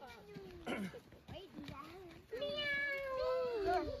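A person meowing like a cat in a playful, wavering voice. Short calls come first, then one long meow starts a little past halfway and falls in pitch at the end.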